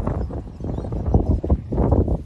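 Wind buffeting the microphone with an uneven low rumble, and a few short knocks between about one and two seconds in.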